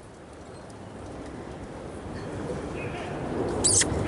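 Pony four-in-hand team and marathon carriage moving over grass, hooves and wheels growing steadily louder as the team comes closer, with a brief high squeak near the end.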